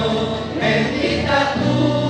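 A man singing a hymn in Spanish, accompanied by an acoustic guitar.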